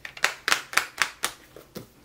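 A clear plastic bookmark being pushed onto a disc-bound planner's disc rings: a quick run of about eight to ten sharp clicks and snaps, spaced roughly a fifth of a second apart, stopping just before the end.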